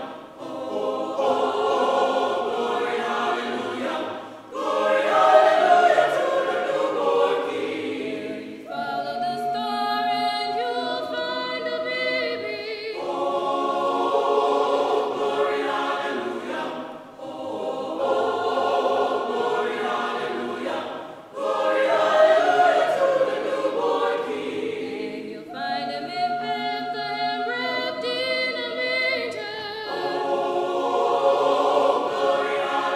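Choir singing in long sustained phrases, each lasting about four seconds with a brief break between them.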